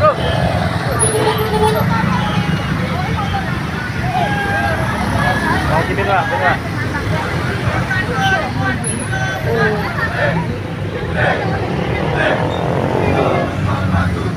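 Motorbike and scooter engines running steadily as they ride past, with a crowd's chatter and calls mixed in.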